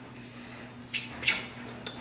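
A few light clinks and taps of a metal measuring cup against a stainless steel mixing bowl as brown sugar is tipped in, starting about a second in after a quiet moment.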